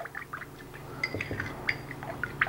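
A spoon stirring oil-and-vinegar salad dressing in a small ceramic bowl, with light, irregular clinks and ticks of the spoon against the bowl.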